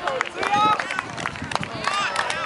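Several people calling and shouting at a distance, voices overlapping, with frequent short sharp clicks or taps among them.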